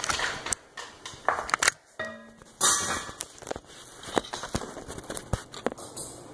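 Handling noise: irregular clicks, knocks and rustling as a phone camera and a lever corkscrew are moved about in the hands, with a brief low hum about two seconds in.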